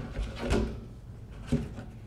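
Locking ring being taken off a plastic rain barrel's lid: a few short scraping knocks, the loudest about half a second in and a sharp click about one and a half seconds in.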